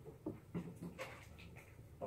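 Quiet classroom background: faint, scattered soft taps and rustles over a low steady hum.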